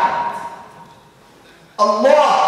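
A man's voice reciting Arabic in a melodic, chanted style; a held note fades out at the start, ringing briefly in the hall. After a pause of about a second the chant starts again near the end.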